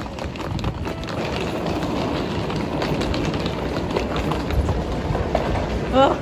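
Suitcase wheels rolling over a tiled terminal floor: a steady rumble with many small clicks, under the general noise of a busy airport hall.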